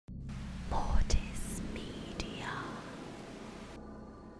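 Glitch-style logo intro sting: a hiss of static over a low hum, with sharp distorted hits about a second in and again just after two seconds, and whispering. The static cuts off shortly before the end, leaving the hum fading.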